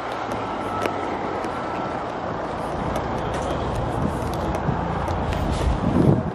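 Outdoor car park ambience: steady traffic noise with a low rumble that swells near the end, and a few faint clicks.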